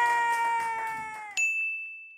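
Trombone holding one long note, which sags in pitch and stops about 1.4 seconds in. Right after, a single high ding rings out and fades.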